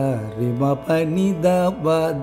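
A man singing a short Carnatic phrase in raga Surutti, sliding and bending between notes, in several short note groups with brief breaks.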